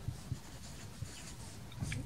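Marker writing digits on a whiteboard: faint strokes with a few light taps of the tip.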